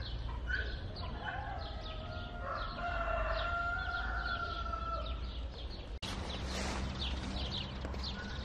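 A rooster crows once, a long drawn-out call of about three seconds, over a steady run of short, high chirps repeating several times a second.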